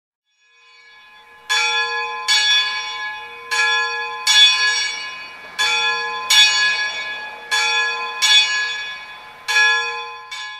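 A bell struck in pairs of strikes, nine strikes in all, each strike ringing on and fading into the next.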